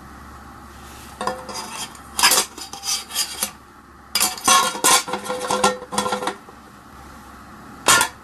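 Metal kitchenware being handled: a round metal cake tin and a stainless steel mixing bowl clattering and scraping in two bursts of ringing clanks, then one sharp clank near the end.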